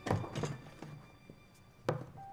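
Cups and a bottle knocked down on a conference tabletop as they are cleared: a loud thunk and a second knock in the first half-second, then a sharp one near the end.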